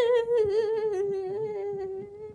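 A person's voice humming one long high note, wavering slightly and sinking a little in pitch.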